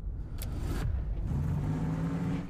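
Car engine running with a low rumble, a steady low hum settling in after about a second, with a brief click about half a second in.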